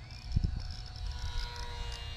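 Small geared electric motor of a HobbyZone UMX Sport Cub S in flight, a faint whine of several thin tones that drift slightly in pitch. The harsh gearbox noise is the sign of a gearbox wearing out after only a few flights. Wind rumbles on the microphone, with a brief low thump about half a second in.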